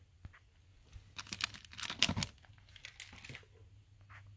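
Vinyl record jackets in glossy outer sleeves rustling and crinkling as one album is slid off the front of the stack to show the next. A string of handling noises starts about a second in, is loudest around the middle and stops shortly before the end.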